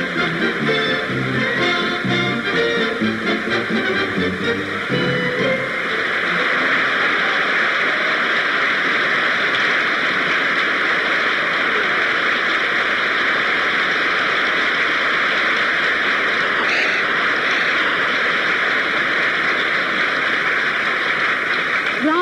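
Play-on music for about the first five seconds as the presenters walk out, then the music stops and a theatre audience applauds steadily for the rest.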